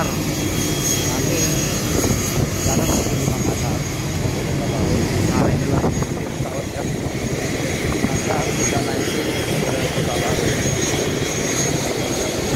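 Aircraft engine noise on an airport apron: a steady loud noise with a thin, high whine running through it.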